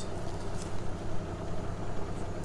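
An engine idling, a steady low hum, with a few faint clicks over it.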